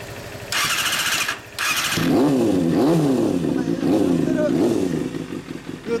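Suzuki GSX250FX 250 cc inline-four motorcycle engine, heard through its aftermarket exhaust, being started: the starter whirs in two short bursts. The engine catches about two seconds in and is revved in several quick blips, its pitch rising and falling.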